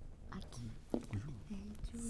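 Two people whispering to each other, low and faint, conferring in hushed voices.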